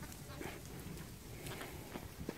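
Faint scattered patter and rustle of lambs' small hooves running over straw bedding, over a low steady rumble.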